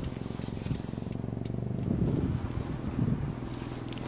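Car engine idling with a steady low hum, heard from inside the vehicle.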